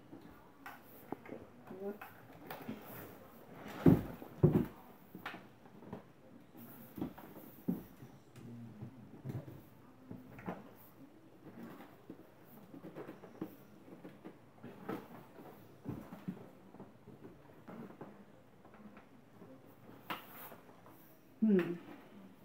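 Hard plastic clicking, knocking and rattling as the handle of an AEG CX7 cordless stick vacuum is worked against its main body, with two louder knocks about four seconds in. The vacuum motor is not running.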